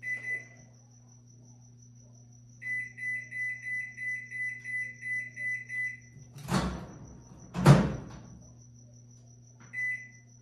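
Microwave oven keypad beeping as buttons are pressed while trying to set the power level: one short beep, then a run of about eleven quick beeps at roughly three a second, then one more beep near the end. Two thumps come in between, about a second apart, and the second is the loudest sound. A faint steady hum runs underneath.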